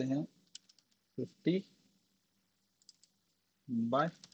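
A few light computer keyboard keystrokes, a short run about half a second in and a couple more near three seconds, between short bits of a man's voice.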